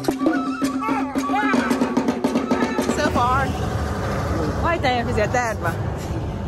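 Traditional drum music breaks off at the start, then people's voices talking over outdoor crowd noise.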